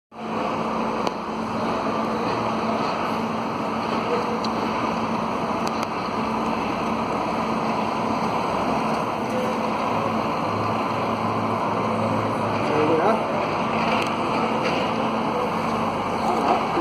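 Scania P360 truck's diesel engine running steadily as the tractor-trailer drives slowly, with a constant low hum.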